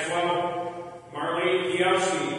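A man's voice chanting liturgy on held, steady notes, in two phrases with a short break about a second in, each trailing off into the reverberation of the church.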